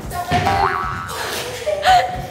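A cartoon-style boing sound effect: a short tone that glides sharply upward in pitch about half a second in, with another rising tone near the end.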